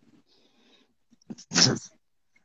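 Near silence, then one short, loud voice-like sound about a second and a half in, with a faint blip after it.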